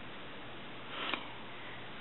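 A single short sniff about a second in, over a steady low hiss.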